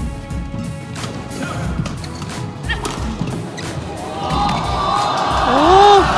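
Badminton rackets striking a shuttlecock in a fast doubles rally, sharp hits about every half second under fading music. Near the end, loud shouts and cheering rise as the rally ends.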